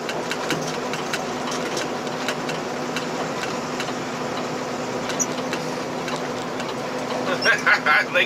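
Steady road and engine noise inside a moving car's cabin, with a low steady hum underneath. A voice comes in near the end.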